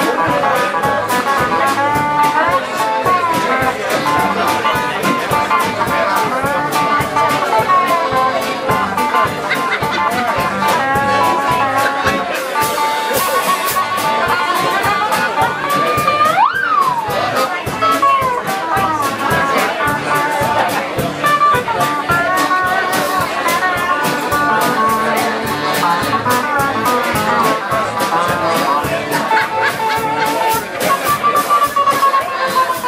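A live band playing a blues-style number on electric guitar, piano accordion, lap steel guitar and drum kit, full of sliding, bending notes. About halfway through, one quick slide runs up in pitch and straight back down.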